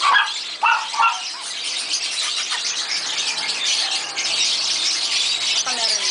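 A caged puppy squeals in three short cries in the first second or so. A busy high chirping runs behind it and grows denser about three seconds in.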